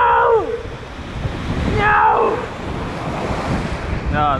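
Surf breaking and washing over the rocks, with gusty wind buffeting the microphone. A short falling call sounds at the start and a fainter one about two seconds in.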